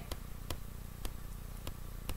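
A handful of faint taps of a drawing-tablet pen, spaced irregularly about half a second apart, over a steady low hum, as Korean letters are handwritten on screen.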